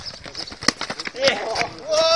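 Footsteps of several players running and scuffing on an asphalt court, with one sharp kick of a football about two-thirds of a second in. A young man's shout joins about halfway through.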